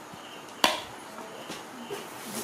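A single sharp knock just over half a second in, with faint insect chirping repeating steadily underneath.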